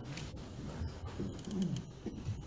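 Hall noise between pieces: low murmur and small knocks, with a short voice sound near the end that slides down in pitch.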